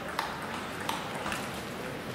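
Sharp, ringing clicks of a celluloid table tennis ball bouncing, three in about a second, over a low steady murmur of the hall.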